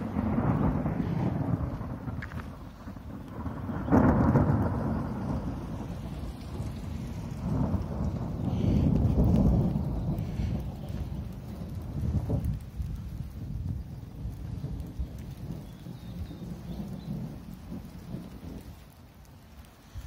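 Thunder rolling in a long, low rumble that swells loudest about four seconds in and again around eight to ten seconds, then slowly dies away.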